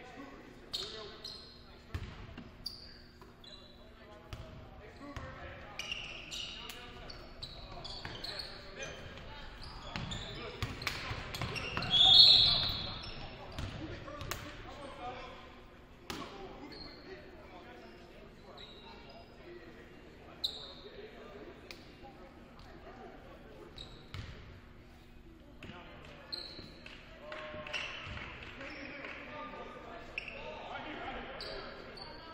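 Echoing gym sound of a basketball game: a ball bouncing on the hardwood, brief sneaker squeaks and the voices of players and spectators. A loud referee's whistle blast sounds about twelve seconds in.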